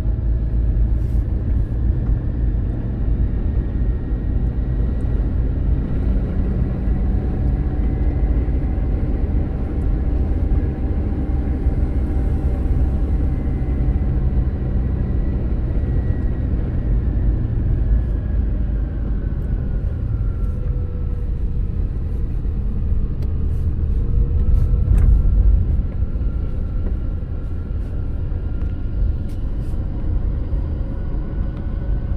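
Car engine and road noise heard from inside the cabin while driving: a steady low rumble. The engine note sinks gently around the middle and climbs again near the end.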